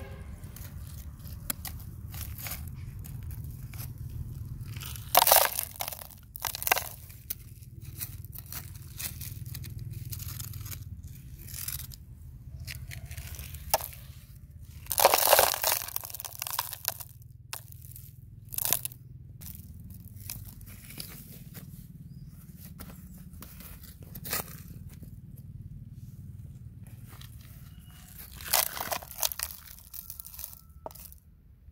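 A plastic toy shovel scraping up gravelly soil and tipping dirt and small stones into a plastic toy dump truck's bed, heard as separate crunching, rattling bursts. The loudest bursts come about five and fifteen seconds in, with a low steady rumble underneath.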